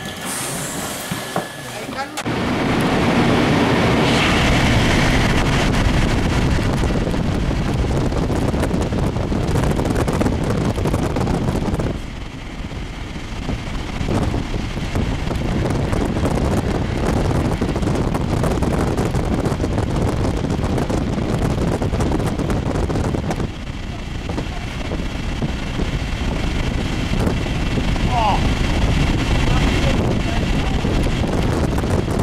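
Regional train running, heard from inside an N-Wagen passenger coach with its window open. The loud, steady rolling and wind noise rises sharply about two seconds in as the train gets under way, and dips briefly twice.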